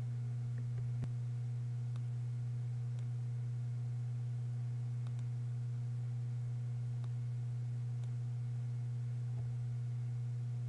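Steady low electrical hum on the recording, with faint mouse clicks about once a second.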